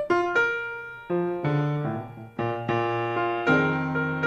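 Piano music: a slow, gentle melody of struck notes and chords, each ringing and fading before the next.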